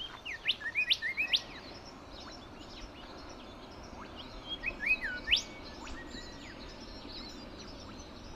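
Birds calling with quick rising chirps, in two bursts: one in the first second and a half and another about five seconds in. The calls sit over a steady background hiss.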